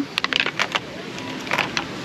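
A small clear plastic case being opened and its contents handled: a quick run of light plastic clicks and taps in the first second, then a couple more about a second and a half in.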